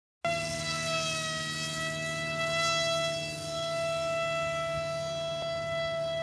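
Brushless electric motor and propeller of a Wild Hawk foam RC airplane whining at high throttle in flight, a steady high-pitched tone that holds nearly level in pitch.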